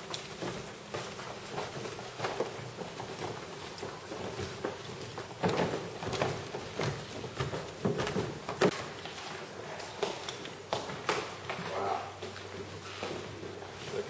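Footsteps of several people walking and then climbing a carpeted staircase, an irregular run of soft steps and knocks.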